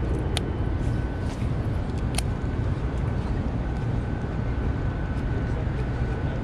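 Steady low rumble of distant road traffic, with two sharp clicks: one just under half a second in, the other about two seconds in.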